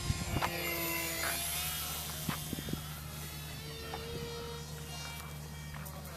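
Radio-controlled model airplane's engine in flight, a thin, high buzzing drone that stays steady in level while its pitch slides slightly.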